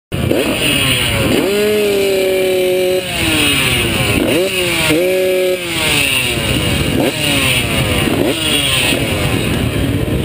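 Several four-stroke motocross bikes, the nearest a KTM 250 SX-F, revving on the start line. The throttle is blipped over and over, a quick rise and fall in pitch about every second and a half, with a couple of short steady holds at higher revs.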